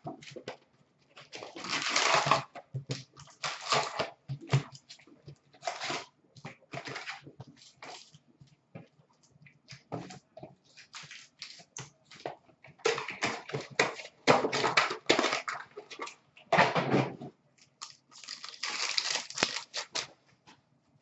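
Foil hockey card pack wrappers being torn open and crinkled, with cards handled between; irregular crackling rustles that come in bursts, loudest about two seconds in, again around thirteen to fifteen seconds, and near the end.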